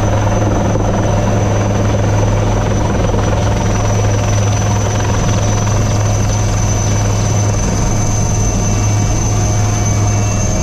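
Military helicopter in flight heard from inside the cabin with the side door open: a loud, steady low rotor and engine hum with a thin, steady high turbine whine above it.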